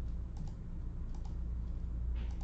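Computer keyboard keys clicking in two quick pairs over a steady low hum.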